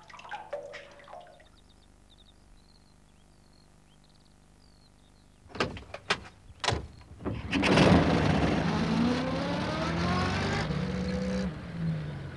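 A few sharp knocks, then a van's engine runs loudly and pulls away, its pitch climbing steadily as it picks up speed.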